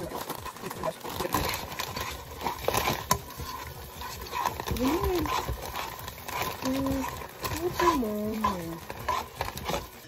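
Handling noises at a pot of boxed macaroni: taps, clatter and rustling as milk is poured in and a cheese-powder packet is handled. Short wordless vocal glides come about five seconds in and again from about seven to nine seconds.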